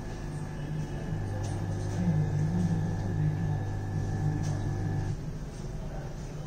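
AC induction motor running at full speed under TRIAC speed control, a steady electrical hum with a faint higher whine. The hum grows stronger about a second in and drops back about five seconds in.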